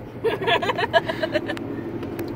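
A man laughing in a quick run of short bursts, over the steady hum of a car's engine heard inside the cabin; the laughter stops about a second and a half in, leaving the cabin hum.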